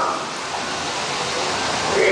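Steady rushing of water in the dark ride's boat channel, an even hiss with no breaks.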